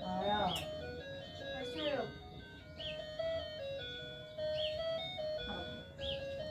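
Electronic toy jingle from a children's ride-on toy car: a simple tune of short, steady notes playing in a loop, with a chirp repeating about once a second. Two falling, pitched calls are heard within the first two seconds.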